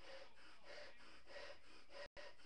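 Faint, quick puffs of breath blown by mouth into a balloon as it inflates, repeating a little under twice a second.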